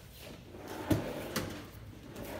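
Pull-out trash can drawer in a wooden kitchen cabinet being slid open, ending in a sharp knock about a second in, followed by a lighter click about half a second later.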